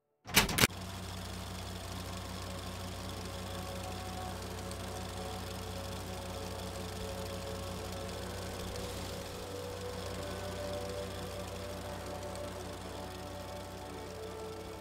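A sharp click about half a second in, then an old film projector running: a steady mechanical whirr with a low hum and a fast pulsing rattle. Soft music comes in faintly underneath.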